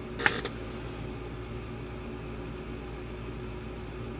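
Steady low mechanical room hum, like a fan or appliance running, with a single short click about a quarter second in.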